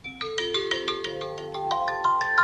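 iPhone alarm going off: its alarm tone starts suddenly and plays a quick run of short ringing notes, several a second, climbing in pitch.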